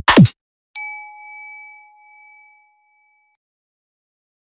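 Subscribe-button animation sound effect: two quick thuds falling in pitch right at the start. Then, under a second in, a single notification-bell ding rings out and fades away over about two and a half seconds.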